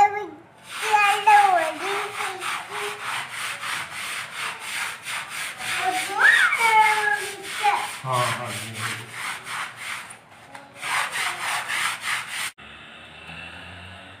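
Hand scrubbing brush rubbing a wet, detergent-soaped carpet in quick back-and-forth strokes, about five a second. The scrubbing pauses about ten seconds in, resumes briefly and then cuts off suddenly. A small child's voice is heard over it at times.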